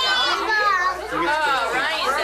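A young child's high-pitched wordless vocalising, the pitch swooping up and down several times.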